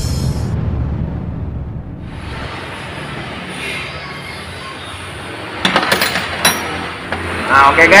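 Background music fading out over the first two seconds, then steady workshop room noise with a few sharp metallic clinks about six seconds in, from a wrench on the engine's cylinder head bolts. A man's voice comes in near the end.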